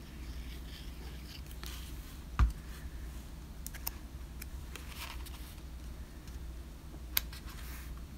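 Quiet handling of small paper cutouts and a glue bottle on a craft table, with faint paper rustles. A single loud thump about two and a half seconds in, as the glue bottle is set down, and a sharp click near the end.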